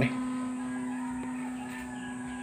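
A steady low hum holding one unchanging pitch, with fainter higher tones above it.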